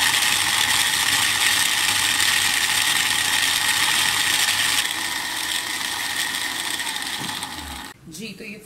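Electric countertop blender motor running steadily, its blade churning falsa berries with water and sugar into juice. It gets a little quieter about five seconds in and cuts off abruptly just before the end.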